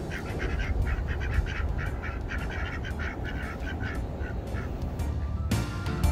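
Domestic ducks quacking in a rapid run of short quacks, about four or five a second, which stops shortly before the end.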